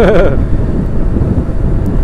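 Wind buffeting the microphone of a motorcycle rider at road speed, a loud, steady low rumble, with the tail of a laugh in the first moment.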